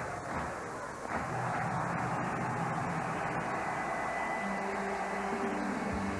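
Steady rushing city-street traffic noise that grows louder about a second in. Held music notes come in near the end.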